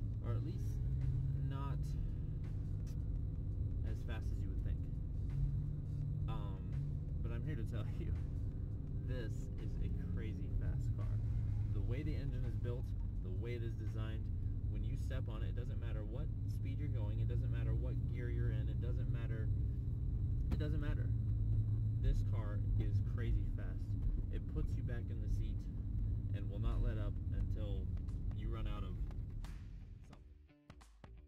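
Steady low drone of a 2003 Mercedes S55 AMG's 5.5-litre supercharged V8 and road noise heard inside the cabin while the car is driven, a little louder in the second half.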